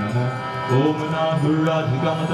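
A male voice singing a Hindu devotional chant over a steady harmonium drone, the melody sliding between long held notes.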